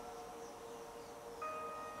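Quiet background film score: soft held tones, with a new, higher note set coming in about one and a half seconds in.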